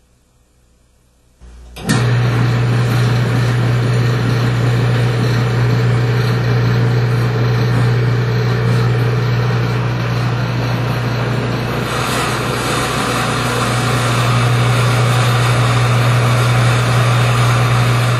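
Electric drive motor of a cross-axis friction test machine switching on abruptly about a second and a half in, then running with a steady hum. The test bearing turns against the race in Bitron diluted with motor oil, with no friction noise. The sound grows a little brighter about twelve seconds in.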